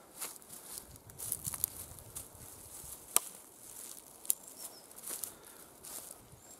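Alpaca wool poncho rustling and flapping as it is held up and shaken out by hand, with a few sharp clicks, the sharpest about three seconds in and another a second later.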